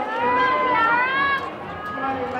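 Several high-pitched young female voices calling out over the general chatter of a gym hall, with two sharp clicks late on.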